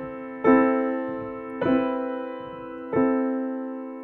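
Piano played slowly and softly: three notes struck about a second and a quarter apart. Each rings and fades away, and the notes overlap as they sustain.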